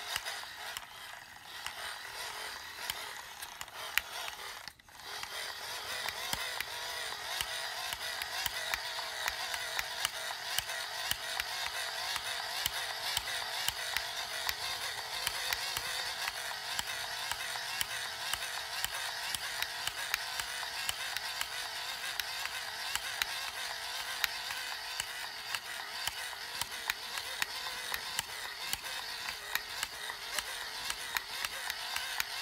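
Hand-crank dynamo of an Ideation Gopower solar flashlight being cranked steadily: an even gear whir with rapid clicking, broken by a brief pause about five seconds in.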